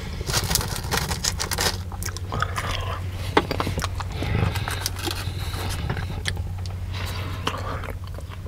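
Close-miked chewing of a Subway sub sandwich: wet mouth sounds with many short, sharp clicks and smacks, over a steady low hum.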